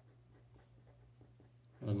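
A pen writing on paper: faint, short scratching strokes. A man's voice starts near the end.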